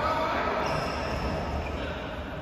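Reverberant sports-hall background noise, with a steady low rumble and faint, indistinct voices. There are no sharp racket-on-shuttle strikes.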